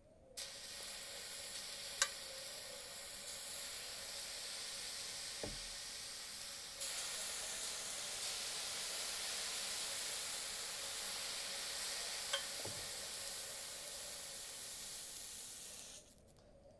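Drops of water sizzling on the hot non-stick plate of an electric crepe maker, a steady hiss with an occasional sharp pop that grows louder about seven seconds in and cuts off suddenly at the end. This is the test that the plate is hot enough for batter.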